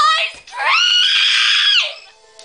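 A girl screaming: a short cry that breaks off just after the start, then one long high-pitched scream of over a second that falls away near the end.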